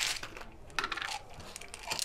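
Antiretroviral tablets clicking and rattling on a plastic pill-counting tray as they are handled by hand. A sharp click at the start is followed by a run of small, irregular clicks.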